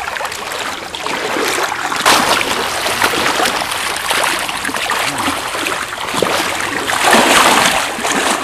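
A big hooked steelhead thrashing and splashing at the water's surface as it is played on the line, with heavier splashes about two seconds in and near the end.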